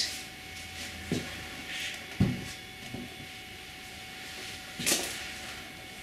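Handling sounds as a velvet-covered necklace display bust is set down on a tabletop and another is picked up: a soft knock, then a sharper dull knock about two seconds in, and a brief rustle near the end.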